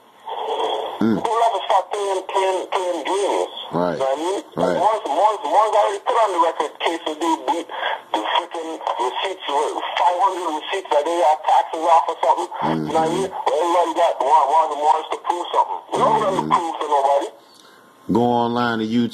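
Continuous talking heard through a thin, narrow-band line that sounds like a phone or radio, with brief pauses about four and thirteen seconds in.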